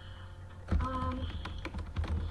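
Computer keyboard typing: a quick run of key clicks that starts about two-thirds of a second in.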